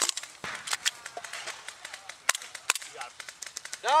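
Airsoft pistol firing single shots: about five sharp cracks, irregularly spaced.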